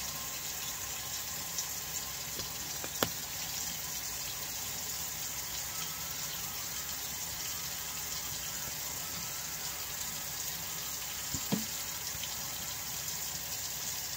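Kitchen faucet running steadily, water streaming into the sink. Two brief knocks, one a few seconds in and one later.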